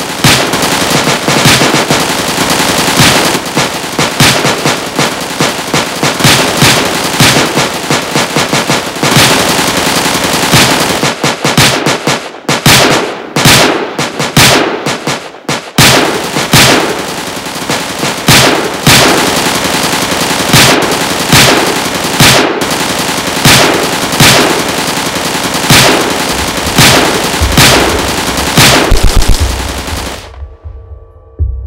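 Rapid, nearly continuous gunfire from handguns in a staged shootout, with dense volleys of shots. The shots thin out for a few seconds around the middle, then pick up again and stop suddenly.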